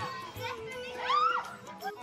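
Background music with steady held notes, and a young child's high-pitched shout that rises and then drops, about a second in and louder than the music.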